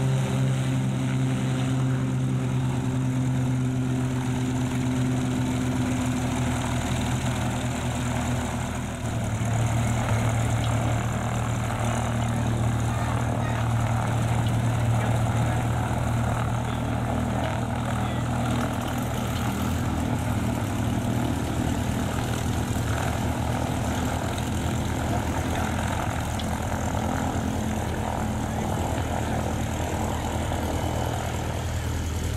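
Piston engines of light single-engine propeller airplanes taxiing at low power, a steady drone. About nine seconds in, the engine of a Mooney taxiing close by takes over as the main sound.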